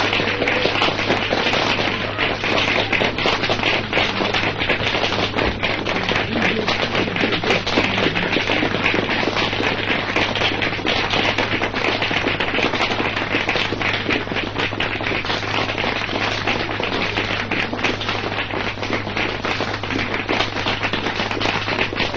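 Audience applause: dense clapping that goes on without a break, over a steady low hum from an old 1990s recording.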